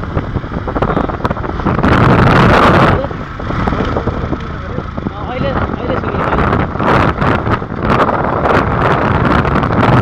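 Wind buffeting the phone's microphone on a moving motorcycle, over the engine and road noise, with the loudest gust about two seconds in.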